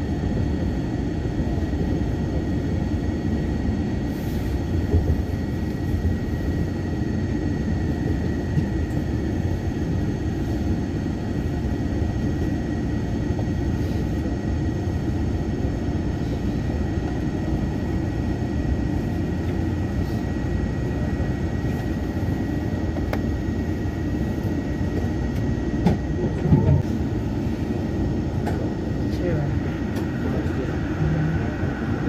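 Steady low rumble and hum inside a Bombardier ART light-metro car on the Yongin EverLine, with a faint steady whine above it, as the train runs into a station and stands at the platform. Near the end come a couple of short knocks.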